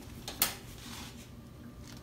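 A single sharp click about half a second in, then a faint steady low hum.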